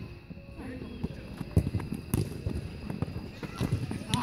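Soccer players running on artificial turf: a string of dull thuds from feet and the ball being kicked, with a couple of sharper knocks near the middle. Players' voices call out now and then.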